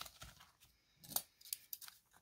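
Paper prop banknotes and binder pages being handled: a few short, crisp rustles and clicks, one group at the start and more from about a second in.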